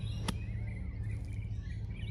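A 7-iron swung down into bunker sand, with one sharp strike about a third of a second in as the club blasts the ball out.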